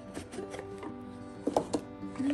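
Background music, with a few sharp knocks and scrapes as the lid of a cardboard gift box is pulled off; the loudest come about one and a half seconds in.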